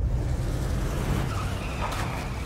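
A car engine running with a low rumble under a steady hiss, with a faint high squeal near the end.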